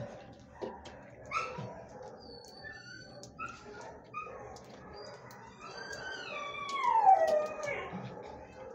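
A dog whimpering and howling: short high whines through the first half, then a long howl about six seconds in that falls in pitch and is the loudest sound.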